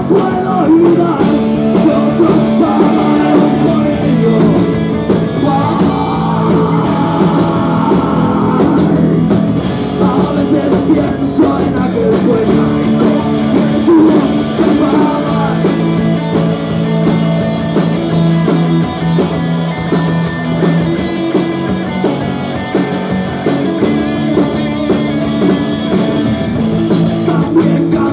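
Live rock band playing loudly: electric guitars, bass guitar and drums, with a male singer singing into a microphone.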